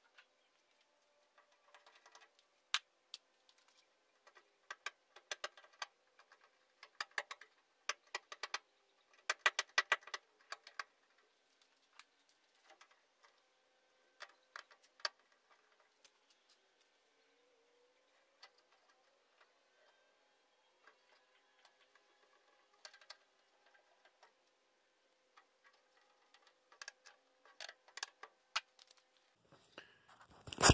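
Faint, scattered clicks, taps and knocks of parts and tools being handled, in clusters about a third of the way in and again near the end, over a faint steady hum.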